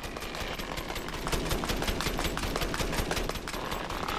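Rapid-fire shooting sound effect from a film soundtrack: an even, machine-gun-like stream of sharp shots, about ten a second. A faint rising whistle comes in near the end.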